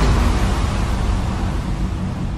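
Logo sting sound effect: a deep rumbling whoosh of noise, loudest at the start and slowly fading.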